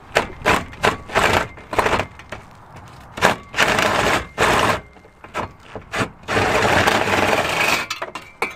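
DeWalt cordless impact driver hammering on a stubborn exhaust bolt up behind the rear bumper support: a string of short bursts, then two longer runs of hammering, the longest near the end.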